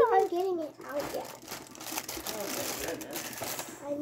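Packaging being handled, crinkling and rustling for about two seconds, after a brief voice at the start.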